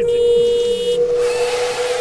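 A sound effect: one steady held tone, with a hiss joining in about a second in.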